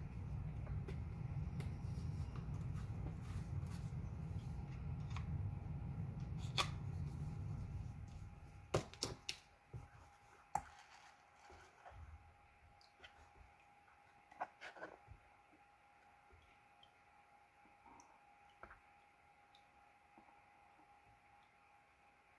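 Water moving in a plastic gold pan set in a tub, a steady low rumble that fades out about eight seconds in, followed by a few light knocks and taps of the pan being handled against the tub.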